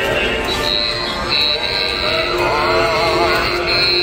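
A song with a singing voice, played by a battery-powered animated Grinch toy riding a tricycle as it moves along.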